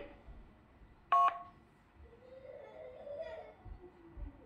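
A single short two-tone beep, a DTMF-style keypad tone, about a second in, heard over the speakerphone of a Cisco SPA525 IP phone carrying a linked amateur-radio net during the handover between stations.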